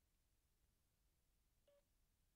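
Near silence: room tone, with one faint short tone near the end.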